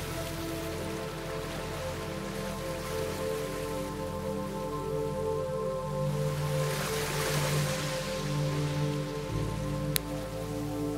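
Soft ambient music of long held notes over the wash of ocean surf, the surf swelling louder about six seconds in and easing off again.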